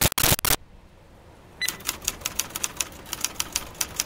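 A loud burst of noise for about half a second, then, from about a second and a half in, a rapid run of typewriter key clicks: a typing sound effect for an on-screen caption being typed out.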